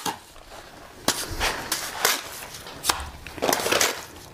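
Steel mason's trowel scraping sand-cement mortar off a hand hawk and throwing it onto a brick wall: a series of short strokes, several in quick succession near the end.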